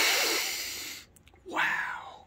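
A man's long, hard sniff close to the microphone, fading out over about a second, as he smells gun-cleaning solvent.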